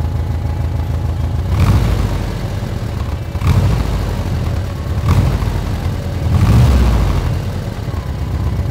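Fuel-injected air-cooled flat-four engine of a Mexican-built Volkswagen Beetle idling, heard through its open engine lid, and revved briefly four times about a second and a half apart. The exhaust is the stock muffler with only an add-on tailpipe tip.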